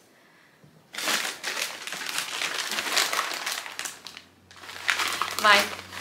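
White paper wrapping crinkling and rustling as an item is pulled out of it by hand. The crinkling starts about a second in and lasts about three seconds.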